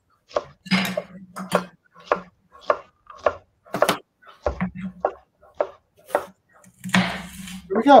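Kitchen knife dicing red bell pepper strips on a wooden cutting board: a run of short, irregular chops, about two a second.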